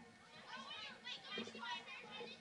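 Faint, distant shouting voices of players calling to each other during a stoppage for a throw-in.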